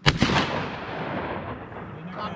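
A single gunshot: a sharp crack, then an echo that rolls away over about a second and a half.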